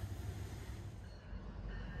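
GO Transit MP40PH-3C diesel locomotive and its train approaching: a faint low rumble that grows a little after about a second.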